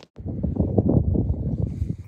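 Wind buffeting the phone's microphone: a loud, irregular low rumble that starts abruptly a moment in.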